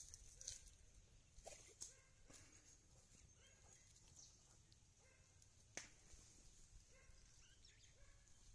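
Near silence: faint outdoor ambience with a few soft clicks and a few faint, distant animal calls.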